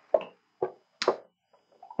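Three scattered hand claps about half a second apart as audience applause dies away.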